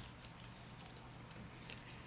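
Faint rustling and small scattered clicks of laminated book pages being handled, over quiet room tone.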